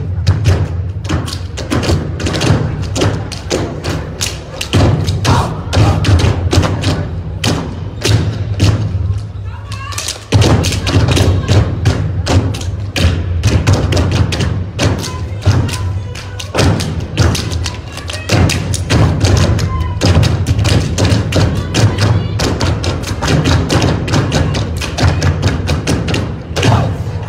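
A step team's stomps and hand claps, many sharp strikes in quick succession, over a backing track with a steady heavy bass; the strikes break off briefly about ten seconds in, then come back hard.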